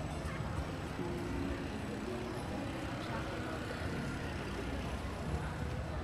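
Steady low rumble of road traffic passing, with scattered voices of people talking.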